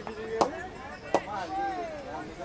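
Two sharp cracks about three-quarters of a second apart, among cricket players' calls and shouts.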